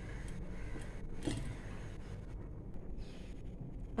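Gas stove burner running under a covered pan of coconut cream being brought to a boil: a steady low rumble, with one faint tap about a second in.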